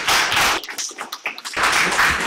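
Applause from a small group of people clapping, thinning out to a few separate claps about halfway through and then picking up again.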